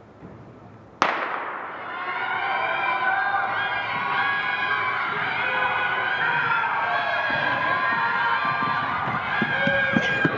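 A starting gun fires once about a second in, its crack ringing on through the large indoor arena. Spectators then cheer and shout steadily while the hurdlers race.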